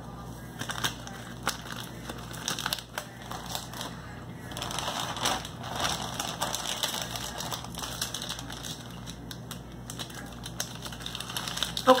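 Crisp crunching and crackling of a coconut-cream wafer cookie being chewed close to the microphone, a run of small sharp clicks, with a denser, louder rustling stretch about five seconds in.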